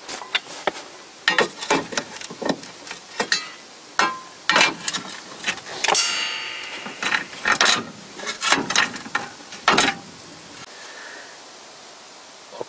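Irregular metallic clinks and knocks of hand tools and steel suspension parts being handled at a car's front lower control arm and ball joint, with one ringing metal clang about six seconds in. It quietens over the last two seconds.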